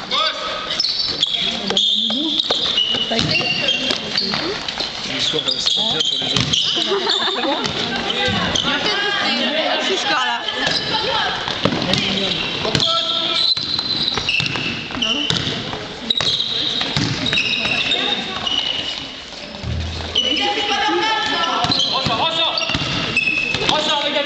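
Basketball game on a gym court: the ball bouncing on the floor, many short high squeaks of shoes, and players' voices calling out.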